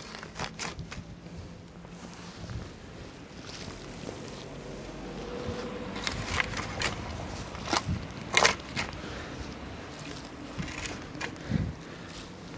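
Steel shovel scooping and scraping loose garden soil while backfilling a planting hole around a young fruit tree, with a handful of short, sharp scrapes.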